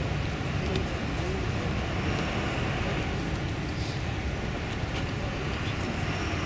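Steady outdoor background noise with a low rumble, unchanging throughout.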